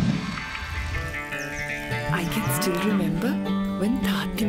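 Quiet background music, with a long drawn-out cow moo rising and falling a little past the middle.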